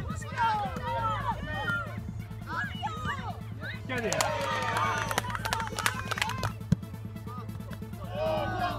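Young footballers and spectators shouting across an open pitch, several voices calling at once, growing busier in the middle as play nears the goal. A single sharp knock comes near the end.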